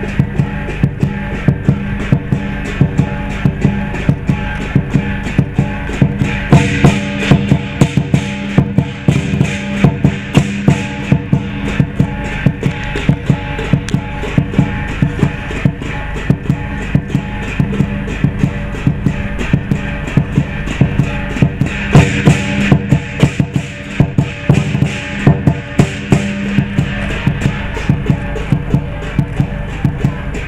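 Lion dance percussion: a large Chinese lion drum beaten in fast, steady strokes with cymbals clashing along. The playing runs without a break and swells louder in two stretches.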